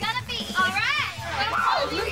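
Young voices cheering and shrieking with excitement, in high calls that swoop up and down.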